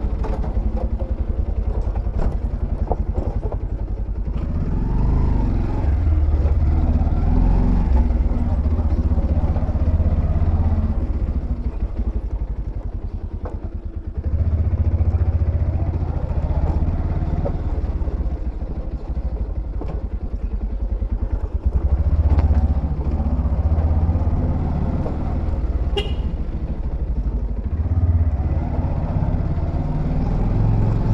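Bajaj Pulsar 125's single-cylinder engine running under light throttle at low speed, easing off and then picking up again about halfway through. A brief high-pitched beep comes near the end.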